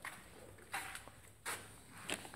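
Three brief, soft scuffs and rustles of someone moving about and handling things, near the start, just under a second in and about a second and a half in.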